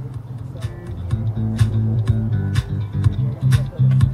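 Guitar-and-bass music with a steady beat playing from outdoor patio speakers with built-in subwoofers, heard from outside through the RV window. The music comes in quietly and rises to full volume about a second in, with a strong bass line.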